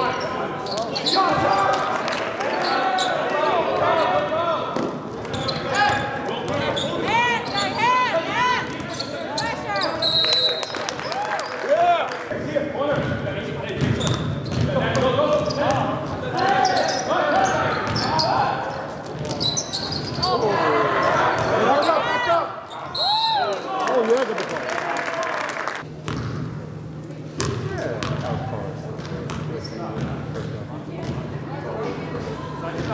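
Basketball game in an echoing gym: a ball bouncing on the court, shoes squeaking and players and the bench shouting. Two short referee whistle blasts come about ten seconds in and again a little past twenty seconds.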